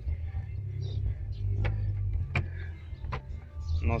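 SEAT Ibiza 1.6 SR four-cylinder petrol engine idling steadily with the hood open, a low, even hum, with a few light clicks.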